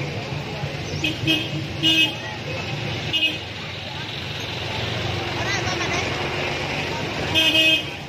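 Street traffic hum with several short vehicle horn toots, a longer honk near the end.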